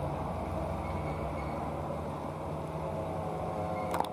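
Diesel truck engine running slowly in crawling traffic, a steady low drone, with a sharp click right at the end.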